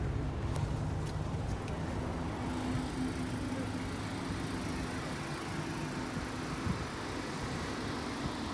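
Steady low rumble of motor vehicles, with a low drone that cuts off suddenly near the end.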